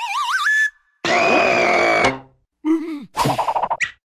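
Cartoon sound effects: a wobbling whistle that rises in pitch and stops under a second in, then a hissing sound with a high steady tone lasting about a second. Near the end come short squeaky vocal sounds that fall in pitch, closed by a quick upward zip.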